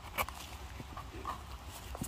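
Small knife scraping and paring the stem of a porcini mushroom: a few soft scrapes and clicks, the sharpest just after the start, over a low steady rumble.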